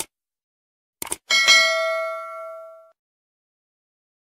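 Subscribe-button sound effect: a quick double click, then a bell ding that rings out and fades over about a second and a half.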